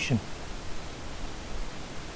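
Steady, even background hiss of room and microphone noise, with the tail of a spoken word at the very start.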